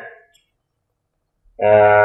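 Narration only: a speaker's voice trails off, then after about a second of dead silence the voice starts again.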